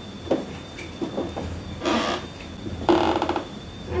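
Footsteps and knocks on old wooden floorboards with a faint steady high whine, and two short breathy, voice-like sounds around the middle that the investigators present as a disembodied female voice saying 'who this'.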